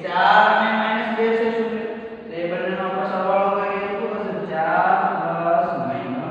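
A man's voice speaking in a drawn-out, sing-song way, holding long vowels in phrases of a second or two, with short breaks about two seconds in and again near the end.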